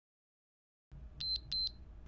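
Two short, high electronic beeps about a third of a second apart, coming about a second in. They are a workout interval timer marking the end of a 60-second interval.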